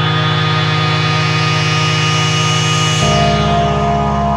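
Audiothingies MicroMonsta 8-voice polyphonic synthesizer in drone mode, holding a sustained chord of steady tones. About three seconds in, the chord changes abruptly to a new chord with deeper bass notes.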